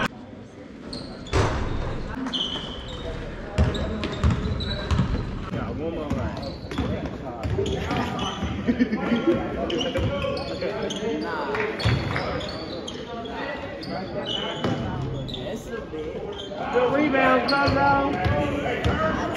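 Live basketball play on a hardwood gym court: the ball bouncing, short high sneaker squeaks, and voices calling out, all echoing in the large gym. The voices get louder near the end.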